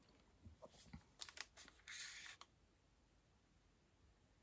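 Mostly near silence, with a few faint clicks in the first two seconds and a short, soft scrape about two seconds in, like light handling of tools or the painted board.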